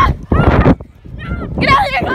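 Teenagers shrieking and laughing in high, wavering voices without clear words, over thumping and rustling from running with the phone in hand. A loud burst comes at the start, then a short lull, then the wavering shrieks near the end.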